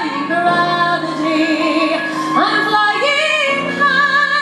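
A woman singing a musical-theatre song into a microphone, holding long notes with vibrato and sliding up to a new note about two seconds in.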